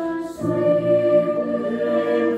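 Mixed choir of adult and child voices singing sustained chords, with a short break about a third of a second in before the next chord comes in.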